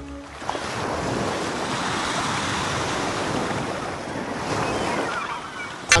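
A steady rushing noise, like wind or surf, with no tone or rhythm, ending in a brief sharp click near the end.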